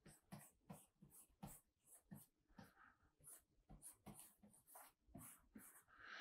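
Near silence with faint, irregular taps and scratches, about two a second, of a stylus drawing strokes on a drawing tablet.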